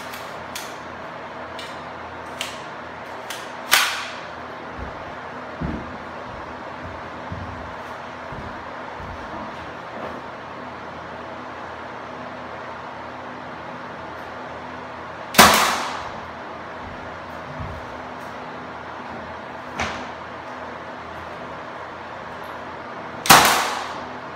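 Senco F-18 cordless 18-gauge finish nailer firing nails into window trim: three loud, sharp shots about four, fifteen and twenty-three seconds in, each with a short tail. Lighter clicks and knocks fall between the shots.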